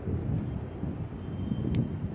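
Outdoor ambience: a low, uneven rumble of wind on the microphone mixed with distant city traffic, with a single faint click near the end.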